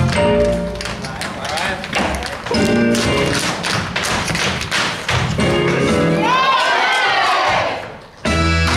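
Show-tune accompaniment for a musical theatre dance number, with the dancers' shoes tapping and stomping in rhythm on the wooden stage floor. Voices ring out over the music for the last couple of seconds, and the number cuts off just before the end.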